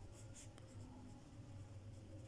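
Faint scratching of a pen writing on workbook paper.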